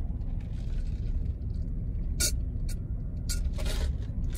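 Steady low rumble of a stationary car idling, heard from inside the cabin, with a few short clicks, the clearest about two seconds in and another near the end.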